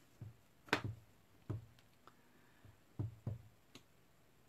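Clear acrylic stamp block being inked and pressed onto card on a tabletop: a series of about six soft knocks and taps, the sharpest about three quarters of a second in.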